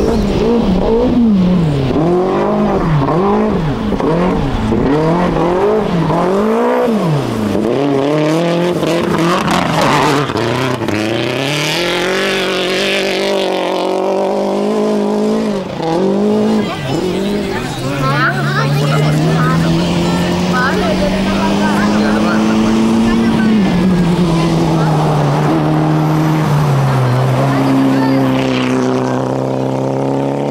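Group A rally car engines at full throttle on gravel stages. The engine pitch rises and falls sharply over and over through gear changes, with a gritty spell of gravel and tyre noise. Later a long, steady engine note climbs slowly, then drops in pitch as a car goes past.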